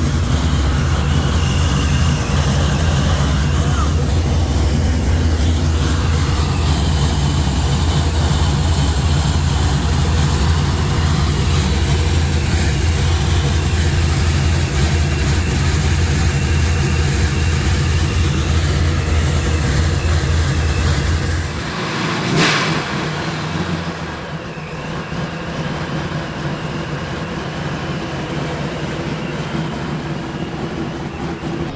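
Supercharged V8 of a burnout Chevelle idling steadily while its power steering system is topped up with fluid. The engine sound cuts off suddenly about two-thirds of the way through, followed by a single sharp click and quieter open-air background.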